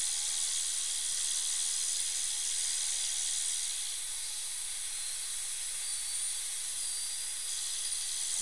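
High-speed dental handpiece with water spray cutting a tooth down for a crown: a steady high hiss of air and water spray.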